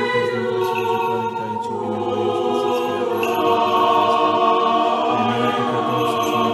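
Choir singing slow, long-held chords, the harmony shifting to a new chord every second or two.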